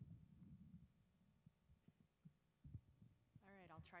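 Quiet, muffled low thumps and bumps, a cluster in the first second and a few single ones after, then a voice begins speaking near the end.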